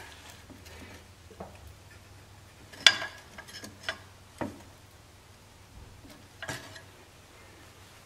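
A few scattered metallic clicks and knocks, the sharpest about three seconds in, as the rigid hydraulic line on a backhoe's hydraulic cylinder is pried up and bent.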